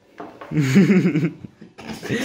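A man's wavering, strained vocal groan, lasting about a second, a reaction to the harsh taste of a shot he has just swallowed.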